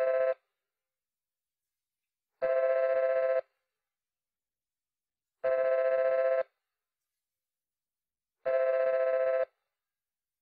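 Telephone ringing: a two-tone electronic ring in one-second bursts about three seconds apart, sounding four times before it stops.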